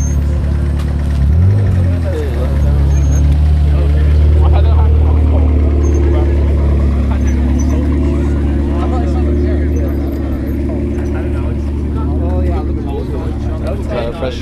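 Sports-car engine idling right beside the camera as a white McLaren 650S rolls slowly past, with a short rev about a second and a half in. The low steady engine sound eases off after about ten seconds.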